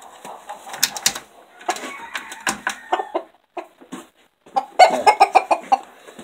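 Rooster clucking, with a quick run of short, loud clucks near the end. A few sharp knocks come about a second in.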